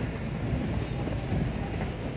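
A steady low outdoor rumble with no distinct events in it.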